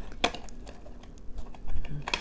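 Light taps and clicks of hands handling a cardstock craft box, with a sharp tap about a quarter second in, scattered small ticks, and a louder knock near the end.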